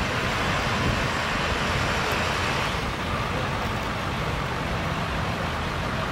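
Steady engine noise from motor vehicles, an even rumble and hiss with no distinct events.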